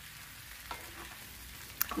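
Sliced potatoes and onions frying quietly in oil in a pan, with a faint sizzle, as they are stirred with a wooden spatula. A light click about half way through and a sharper one near the end.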